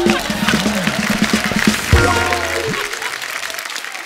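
Studio audience applauding over a short burst of background music; the clapping thins out towards the end.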